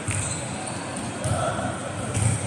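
Volleyball players' voices and a ball thudding on the court floor, echoing in a large indoor sports hall, with a sharp impact just at the start.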